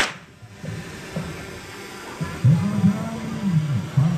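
Sound of a street carnival parade: a steady crowd and street noise. From about two seconds in, a loud, low sound rises and falls again and again, likely amplified music or voices from the parade. A sharp click opens it at the cut.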